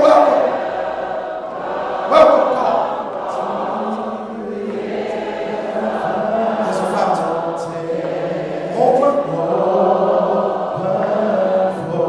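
Church choir singing a hymn unaccompanied, in several-part harmony with long held chords, a man's lead voice on a microphone among them.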